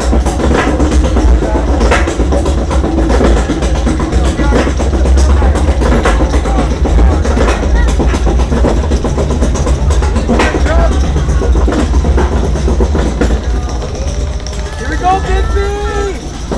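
Ride noise from an Arrow Dynamics looping roller coaster picked up by a front-row camera: a heavy, steady low rumble with scattered clicks and clatter, and a few voices calling out over it.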